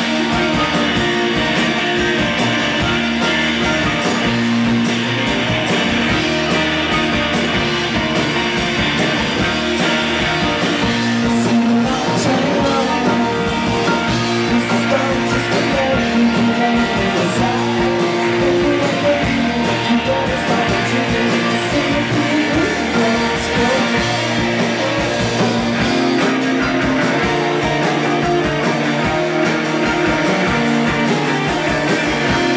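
Rock band playing live with electric guitars over a steady drum beat.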